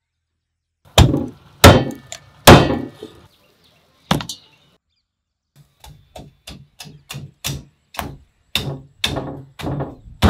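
Cleaver chopping bone-in chicken on a wooden log chopping block. Three heavy chops come about a second in, one more follows a little later, then a run of lighter, quicker chops at about two a second that grow heavier.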